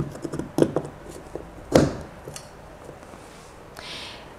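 A plastic PoE extender housing being handled and clipped onto a metal DIN rail: a few light clicks and taps, with one sharper click a little under two seconds in.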